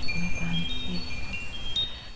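Chimes ringing: several high, clear tones struck one after another, each ringing on, with a soft low tone coming and going underneath.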